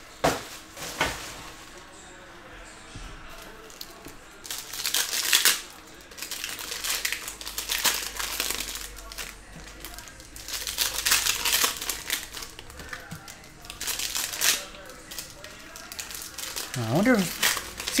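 Trading-card pack wrappers crinkling in several short bursts as sealed football card packs are handled and torn open.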